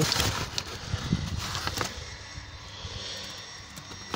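Cardboard packaging rustling and knocking as the box is handled. About halfway through it gives way to a fainter, steady low drone.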